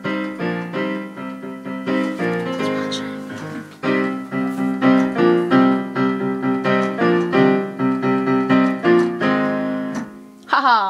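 Piano played with both hands, a quick rhythmic run of repeated chords and notes, several a second.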